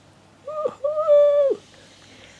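A man's voice giving a high, two-part hooting "ooh–oooh", a short note then a longer held one that drops away at the end, in excitement.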